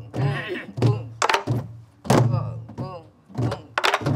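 Group of sori-buk (Korean pansori barrel drums) played together in a steady pattern: deep booms of palms and sticks on the drumheads, mixed with sharp clacks of sticks on the wooden body, while a voice sings along.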